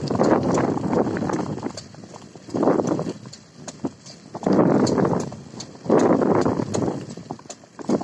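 Rolling noise of riding over a rough dirt track: rough rumbling surges about a second long that come and go, with light clicks over them.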